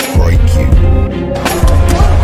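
Music with a heavy bass beat and sharp hits, one just after the start and two more near the end.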